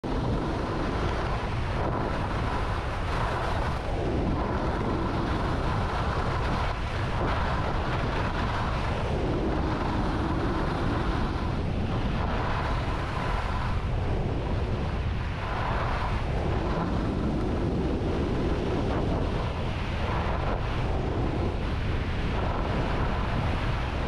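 Skis running over freshly groomed corduroy snow, with the edges scraping and hissing through a turn every few seconds, over a steady rush of wind on the microphone.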